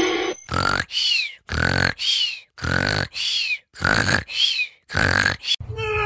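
An animal grunting in a steady rhythm: five pairs of short, throaty grunts, about one pair a second.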